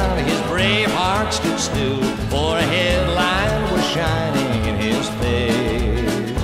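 Country music recording: acoustic guitar over a steady, alternating bass rhythm, with a melody line that slides and wavers in pitch above it.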